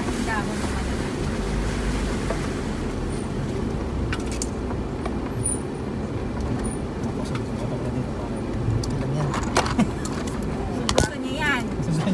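Vehicle's engine and tyres running steadily on a rough dirt track, heard from inside the cabin as a continuous low rumble, with a few short knocks as it goes over bumps.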